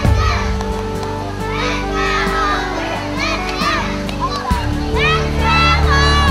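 A group of young girls' voices shouting cheers together, many high calls rising and falling in pitch, over music with steady low sustained notes.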